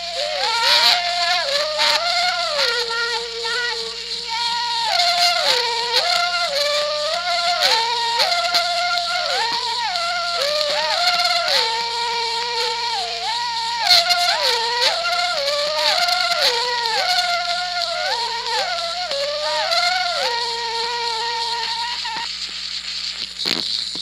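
Banuni polyphonic yodel: two voices sing interlocking parts, each leaping back and forth between a low and a high note in a repeating pattern. Near the end the lower part drops out and one voice holds on alone. An old archival recording with a steady hum and hiss underneath.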